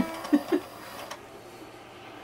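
A musical baby toy's sung tune stops just after the start on a held note. Two short blips follow, then quiet room tone.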